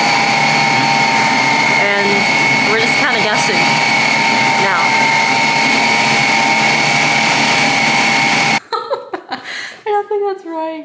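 Ninja Creami ice cream maker running, its blade spinning down through the frozen pint: a loud, steady whir with a high whine. It stops abruptly about eight and a half seconds in.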